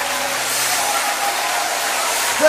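Congregation applauding: an even wash of clapping, with a low held note fading out about a second in.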